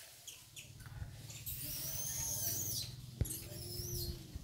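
Infant macaque squealing: a long high-pitched arching cry about a second and a half in, then a shorter one near the end. A single sharp click sounds just after the third second.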